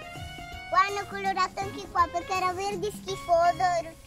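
Background music, with a young girl talking over it from about a second in.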